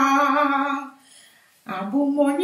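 A woman singing a chant without accompaniment, holding one long note that fades out about a second in. After a short pause, a new phrase begins with a rising note near the end.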